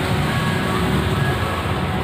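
Steady outdoor background noise of traffic and people, with a low rumble throughout.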